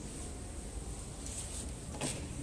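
Quiet indoor background: a faint, steady low rumble with no distinct knocks or clicks.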